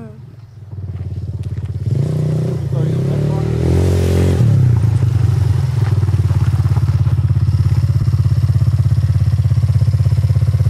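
Small quad bike's engine: it picks up about a second in, revs up and down a few times, then runs steady and gets louder as the quad comes closer.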